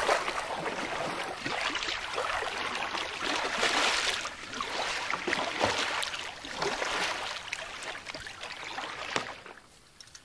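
Stream water rushing and splashing around a kayak moving through shallow current, with the splashes of paddle strokes; it falls away near the end.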